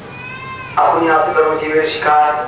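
A man speaking through a hand microphone and loudspeaker, opened by a brief, high-pitched held cry lasting under a second.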